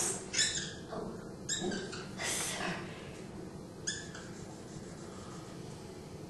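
Dry-erase marker writing on a whiteboard: a few short strokes and squeaks in the first four seconds, then faint classroom room tone.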